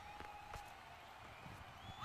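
Near silence: faint ground ambience, with a faint steady tone and two faint clicks in the first half second.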